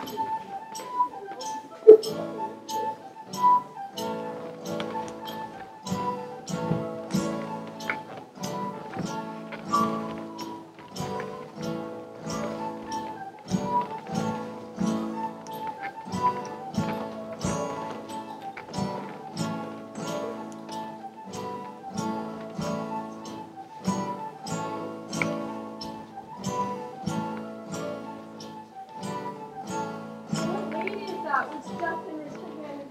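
Live folk-style dance music: an acoustic guitar strummed in a steady beat of a little over two strokes a second, under a melody on a recorder.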